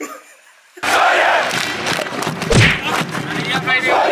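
A person yelling loudly and at length, starting suddenly just under a second in, with a thump about halfway through.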